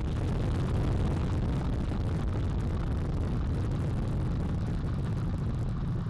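Space Launch System rocket at liftoff, its four RS-25 core-stage engines and two solid rocket boosters making a steady low rumble with a crackling texture.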